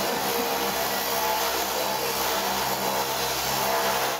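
Metro train running: a steady mechanical hum over an even rushing noise.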